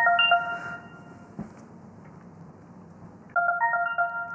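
A short electronic chime of a few quick bright notes, sounding at the start and again about three and a half seconds in, each ending on a note that rings on for about a second. It is the cue that goes with the speaker's timed opening position as the countdown clock starts.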